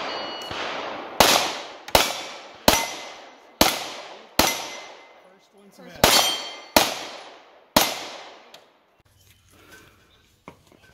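About nine 9mm pistol shots from a SIG P210A, roughly a second apart with a longer pause before the last three. Each shot is followed by the ringing of a hit steel plate.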